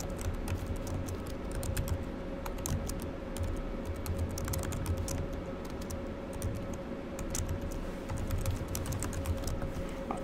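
Typing on a computer keyboard: an irregular run of quick key clicks as code is typed in, over a steady low hum.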